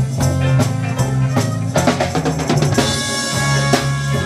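Live band playing an instrumental number: an electric bass line and electric guitar over steady drum strokes. About two seconds in the drums play a quick run of strokes, followed by a bright wash of cymbals.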